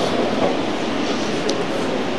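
Steady background hiss and rumble with no words, heard through the sermon's microphone during a pause in the speech.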